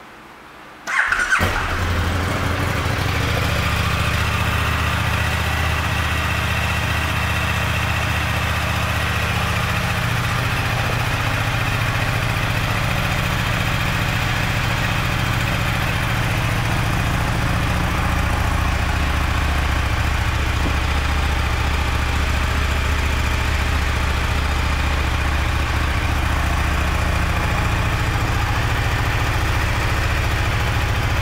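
2014 KTM 1290 Super Duke R's 1301 cc V-twin starting about a second in, then idling steadily.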